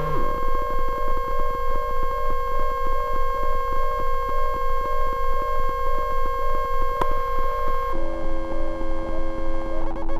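Small patch-cable DIY synthesizer playing steady sine-like tones at a middle and a higher pitch, pulsing about twice a second. A sharp click comes about seven seconds in, and about a second later a set of lower tones joins the drone.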